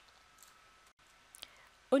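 Near silence: room tone, with a couple of faint clicks, the clearer one about a second and a half in. Speech starts again at the very end.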